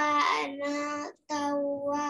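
A child reciting Quranic verses in a melodic chant, with long held vowels in two drawn-out phrases and a short breath between them.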